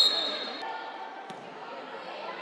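A referee's whistle gives one sharp, high blast that ends about half a second in, signalling a goal. After it comes the echoing noise of an indoor sports hall, with voices and a single knock like a ball hitting the court.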